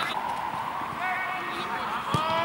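Footballers' voices shouting and calling out during play, over a background of open-air crowd noise.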